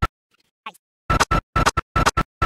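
Stutter-loop edit: after a near-silent first second, one tiny snippet of audio is repeated over and over, about four identical chops a second with short gaps between them.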